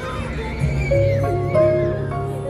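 Instrumental pop backing track playing through a busker's amplified speaker, with held bass and melody notes and a wavering high-pitched line that rises and falls across the middle.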